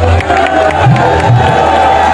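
Live band music: a long wavering held note over a few low hand-drum strokes, with a crowd cheering.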